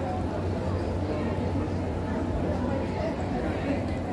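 A crowd of people talking at once: an indistinct, steady babble of many voices.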